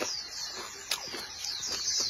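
Close-up chewing of a mouthful of shrimp and rice, with a few sharp wet mouth clicks, about one in the first second. Quick high chirps, each sliding down in pitch, repeat steadily behind it.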